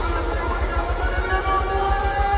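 Live band music from a Haitian kompa group's stage intro, played loud through a concert PA: heavy bass under held melody notes, one long note sustained through the second half.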